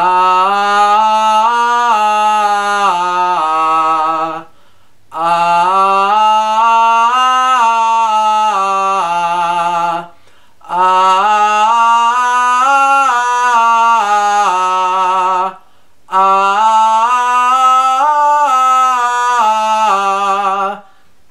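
A man singing a five-tone scale on an open 'ah' vowel, stepping up and back down, four times over with a short breath between runs and a slight vibrato on the held notes. The jaw is held wide open in one position, an exercise for singing without jaw and tongue tension.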